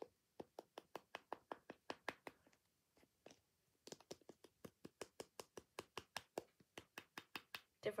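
Long fingernails tapping rapidly on a hollow chocolate egg: a fast, even run of sharp clicks, about five a second, with a short pause partway through.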